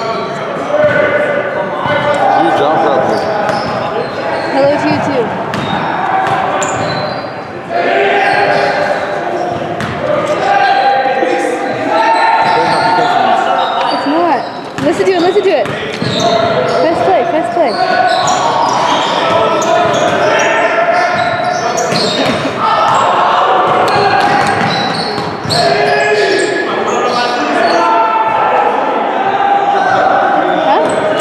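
A basketball bouncing on a hardwood gym floor, with many short thuds, over a steady mix of indistinct voices from players and onlookers echoing in a large gym hall.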